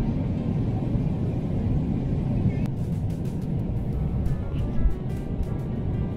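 Steady low drone of a Boeing 777-300ER cabin in cruise, with background music laid over it. A light ticking beat comes in about two and a half seconds in.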